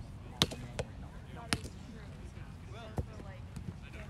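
Roundnet rally: a Spikeball ball slapped by hands and bouncing off the net, four sharp hits in about three seconds, the first the loudest. Voices murmur faintly underneath.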